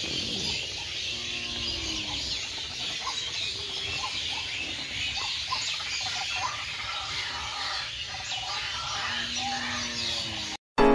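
A dense chorus of many birds chirping at once at dusk, an unbroken wash of high, overlapping calls. A low drawn-out tone sounds briefly about a second in and again near the end.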